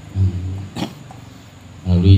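A man's voice through a microphone: a short low throaty sound, then one brief sharp noise a little under a second in, and speech starting again near the end.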